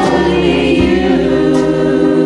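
Singing over a karaoke backing track: a voice bends into a note, then holds it over sustained chords and a steady bass.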